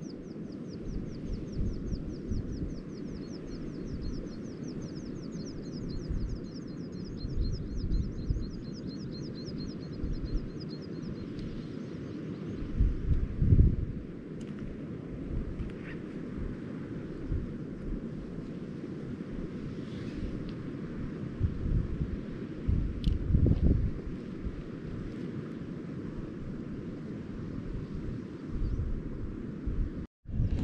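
Wind buffeting the microphone in gusts, a low rumble that swells and eases. For about the first twelve seconds a high, fast trill of rapid chirps runs above it, then stops.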